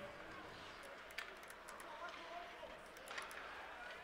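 Faint ice hockey rink sounds during play: a low wash of skates on ice and arena ambience, with a few sharp stick-and-puck clacks, about a second in and again around three seconds in.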